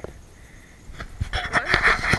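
A dog panting, beginning about a second in as a run of quick, closely spaced breaths.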